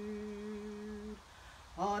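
A woman singing unaccompanied, holding one long, steady note that ends about a second in; she starts the next sung line near the end.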